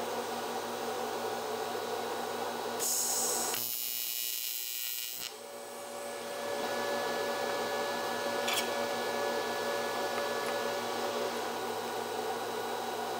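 TIG welder's AC arc on aluminum buzzing steadily, with a loud hiss lasting about two seconds, starting about three seconds in, that drowns out the buzz.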